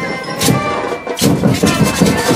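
Parade marching band playing: held melodic tones over drum and percussion strikes, with a brief drop just before the full percussion beat comes in about a second in.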